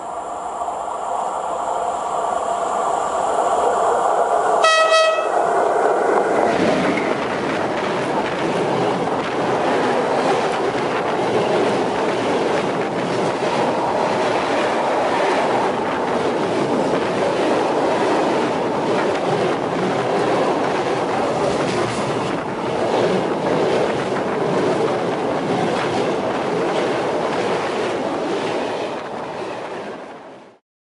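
ET22 electric freight locomotive approaching on the track and sounding one short horn blast about five seconds in. It and its freight train then roll directly overhead, heard from between the rails as a loud, steady rumble of wheels on rail with clickety-clack, fading away near the end.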